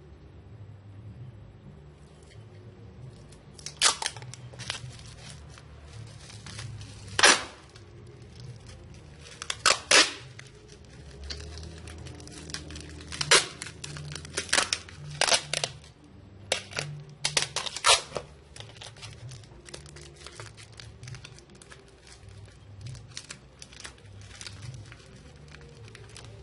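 Packing material crinkling and crackling as it is handled while stones are wrapped, with irregular sharp crackles and rustles, the loudest a handful of spaced-out sharp crackles.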